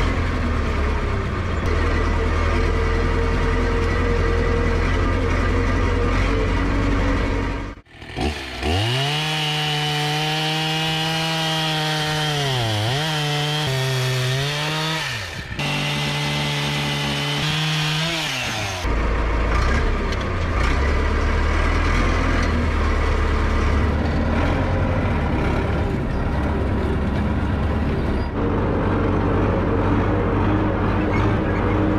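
Valmet 88 tractor's diesel engine running for about eight seconds; then a chainsaw cutting through a dead tree log, its pitch dipping as it bogs down in the wood and picking up again, for about ten seconds; then the tractor's engine running again.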